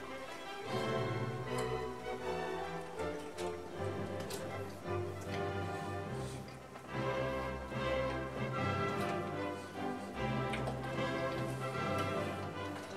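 Background music with a light ticking beat.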